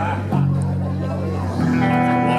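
Live band music: guitars playing held chords that change about a third of a second in and again near the end, with voices chattering underneath.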